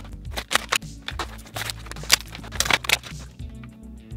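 Background music with irregular light clicks and taps, as small plastic action figures are handled and set down on a tabletop.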